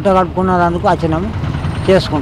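Interview speech in the first second and again near the end, over a steady low rumble of street traffic.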